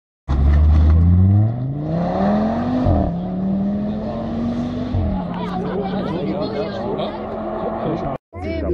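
Audi TT rally car accelerating hard out of a junction: the engine revs climb, drop at an upshift about three seconds in and again about five seconds in, then the sound fades as the car pulls away. People talk near the end.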